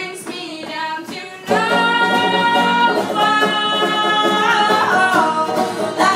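Live folk punk song: two women singing over banjo and acoustic guitar. About a second and a half in, the singing gets louder and holds one long note, which wavers toward the end.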